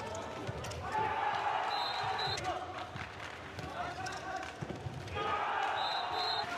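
A handball bouncing on an indoor court floor during play, with short squeaks of shoes on the floor and players' voices echoing in the hall.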